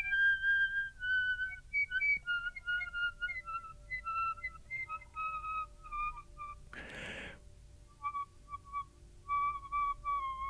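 Piccolo whistle tones: thin, pure, quiet tones blown with very slow, soft air, stepping down in pitch note by note, with brief flicks up to higher tones between notes. About seven seconds in, a short hiss of breath breaks in, and then the whistle tones carry on lower.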